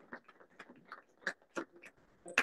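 A few faint, scattered claps, the last of a round of applause dying away.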